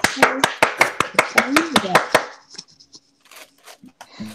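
Quick, evenly spaced clicking of a Moyu 15x15 puzzle cube's layers being turned by hand, about six clicks a second, stopping a little over two seconds in.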